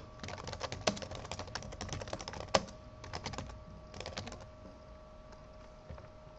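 Computer keyboard being typed on, keystrokes clicking in quick runs for about four and a half seconds, one of them sharper about two and a half seconds in, then stopping: a short line of text being typed.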